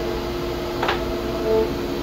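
Steady mechanical hum of workshop machinery running, several even tones held without change, with one brief sharp sound about a second in.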